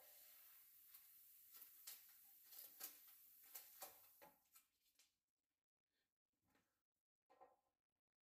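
Near silence, with a few faint clicks and knocks as air hoses and fittings are handled and taken off a wastegate.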